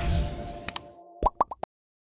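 Animated like-button sound effects. A low swoosh plays as music fades out, then a quick double click, then four short rising pops in quick succession before it goes silent.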